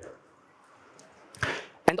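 A short pause in a lecturer's speech over the microphone: faint room tone, then a quick breath in about one and a half seconds in before he speaks again.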